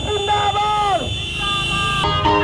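A voice through a vehicle-mounted horn loudspeaker holds one long note, then slides down and stops about a second in, over the low rumble of motorcycle and car engines.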